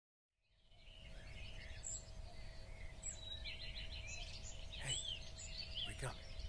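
Faint outdoor ambience fading in from silence: many birds chirping and calling over a low steady rumble.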